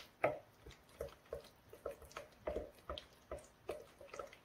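Wooden spatula stirring a thick, sticky doenjang and gochujang seasoning paste in a plastic bowl: repeated short, wet squelching strokes, about three a second.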